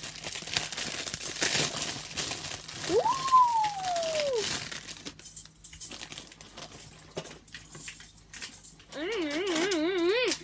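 Clear plastic bag crinkling as a small squeeze toy is unwrapped. About three seconds in comes one high tone that rises and then slowly falls, and a wavering, voice-like sound comes near the end.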